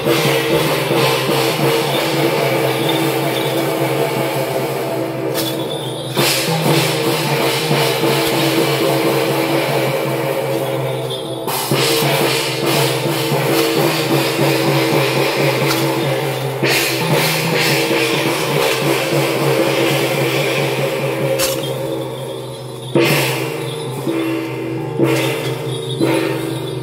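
Temple procession percussion band of drum and gongs playing a continuous beat, the gongs' ringing tones held under the drum strokes. The playing thins out briefly twice, about six and eleven seconds in.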